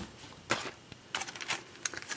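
Clear plastic packaging handled, giving a few light clicks and crinkles.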